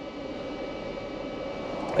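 Cooling fan of a Lexus GX 550's centre-console cool box running, a steady even whir heard in the cabin.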